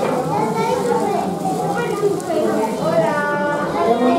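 Indistinct, overlapping voices of children and adults talking at once.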